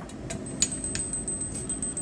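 A few light metallic clicks and clinks as a hacksaw is handled and lifted off a bench vise.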